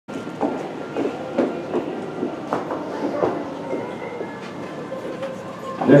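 Ambience of a large indoor arena: a faint steady hum in the hall with irregular soft knocks and thuds about every half second. Near the end, a man's voice begins announcing.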